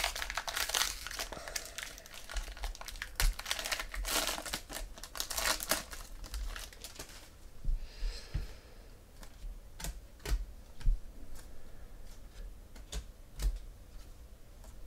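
Foil trading-card pack wrapper being torn open and crinkled for about the first seven seconds, then a scattering of light clicks and taps as a stack of trading cards is handled and flipped through.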